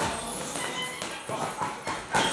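Boxing gloves striking focus mitts: a few sharp slaps in quick succession in the second half.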